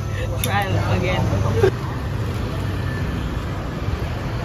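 Laughter for about the first second and a half, over a steady low rumble of outdoor background noise that carries on after it.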